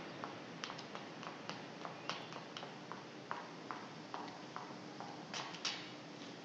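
Footsteps of shoes tapping down hard stairs in a stairwell, about two steps a second, with two louder steps near the end, over steady film-soundtrack hiss.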